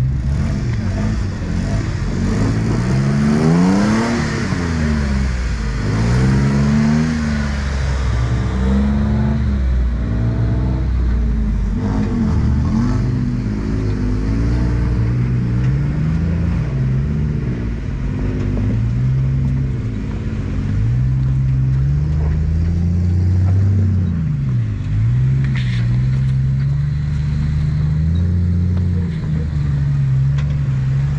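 Off-road 4x4's engine revving up and down over and over as it crawls over rock, its pitch rising and falling with each push of the throttle.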